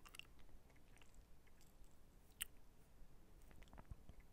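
Near silence: room tone with a few faint clicks, one a little louder about two and a half seconds in.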